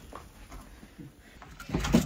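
Quiet, faint outdoor ambience in falling snow. Near the end a brief low rumble of wind buffets the microphone.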